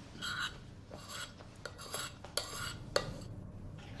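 A metal spoon scraping and clinking against a plate as someone eats: about five short scrapes, with a sharper click near the end.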